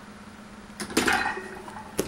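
Steel barbell being set down on a weight bench's metal rack: a clatter of knocks with brief metallic ringing about a second in, then one sharp knock near the end, over a steady low hum.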